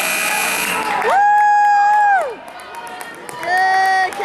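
A buzzer sounds for the first second, then spectators yell: one long, high-pitched shout lasting about a second, and a second shout starting near the end.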